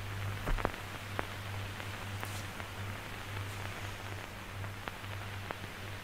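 Steady hiss with a low hum and a few faint clicks: the background noise of an old 1946 film soundtrack.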